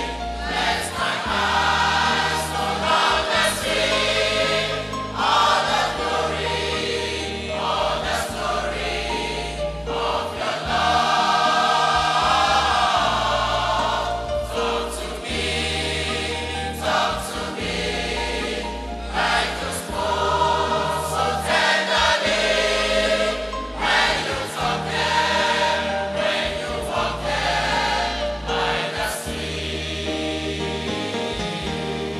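Adult church choir singing with instrumental accompaniment, over a bass line that moves to a new note every couple of seconds.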